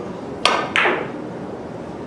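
Two sharp clacks of carom billiard balls about a third of a second apart. The cue tip strikes the cue ball, and the cue ball then clicks off another ball with a brief ring.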